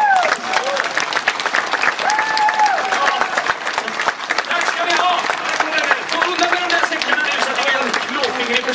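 Outdoor theatre audience applauding at the end of a song, with performers' voices calling out over the clapping, including one long held shout about two seconds in.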